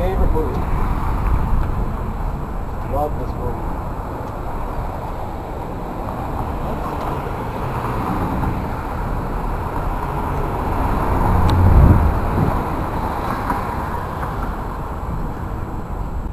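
Outdoor street traffic noise, with a vehicle rumbling past, loudest about twelve seconds in.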